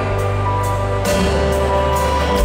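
Live country band playing an instrumental passage with no vocals: acoustic guitar, electric guitar, pedal steel guitar and drums, with long held notes and a few cymbal hits.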